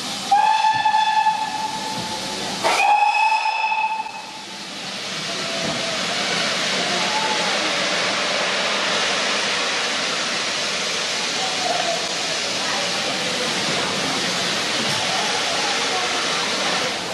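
Steam tank locomotive's whistle sounding two blasts, one straight after the other. A steady hiss of escaping steam then builds as the train starts away, with steam pouring out around the cylinders.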